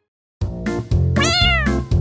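After a brief silence, rhythmic keyboard background music starts, and about a second in a single cat meow, rising then falling in pitch, plays over it.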